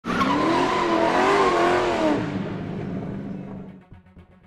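Car tyres squealing in a skid: a wavering screech over a rush of noise for about two seconds, then fading away.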